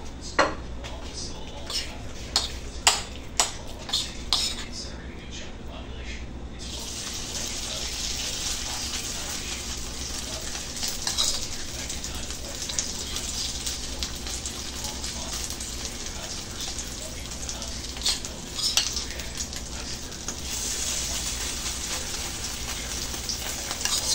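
A spoon clicking against a bowl as the ground pork, potato and egg mixture is stirred, then hot oil sizzling in a frying pan. The sizzle grows louder near the end as a spoonful of the mixture goes into the oil.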